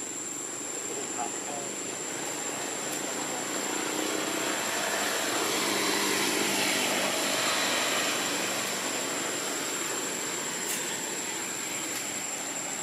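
An engine passing at a distance, its sound swelling to its loudest about halfway through and then fading, over a steady high-pitched whine.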